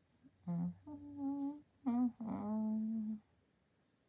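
A woman humming a short tune to herself, about four held notes, the last and longest ending a little after three seconds in.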